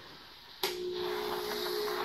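Handheld carpet steamer starting up about half a second in with a click, then running with a steady hum and hiss as it steams a pre-treated spot.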